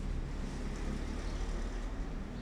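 A steady low rumble of background noise.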